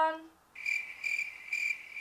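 Cricket chirping sound effect edited in as an 'awkward silence' gag: a high, steady trill pulsing in short runs. It starts suddenly about half a second in.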